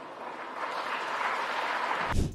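Arena audience applauding, swelling about half a second in.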